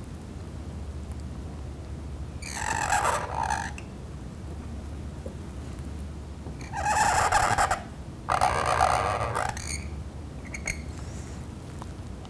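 Cut-nib calligraphy pen (qalam) scratching across paper in three strokes, each about a second long, over a low steady hum.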